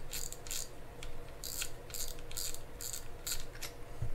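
Front drag knob of a Shimano Spirex 2500FG spinning reel being unscrewed by hand, giving a run of light, high-pitched clicks, about three a second.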